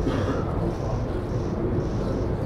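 Steady room ambience during a staged silence: a continuous low hum with a faint murmur of voices in the background.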